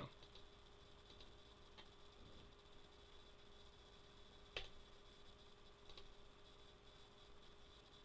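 Near silence: faint steady room hum, with one computer mouse click about halfway through and a couple of fainter clicks.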